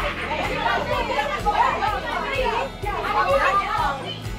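Several women chattering over one another, with music with a beat playing underneath.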